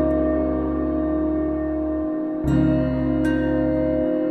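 Instrumental passage of a dream-pop song: a held chord rings on, the bass drops out about two seconds in, and a new chord comes in half a second later.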